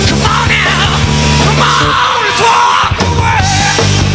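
Live punk-edged alternative rock band playing between sung lines: guitars, bass and drums.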